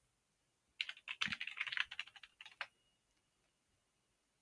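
Computer keyboard typing: a quick run of keystrokes starting just under a second in and stopping a little before three seconds in.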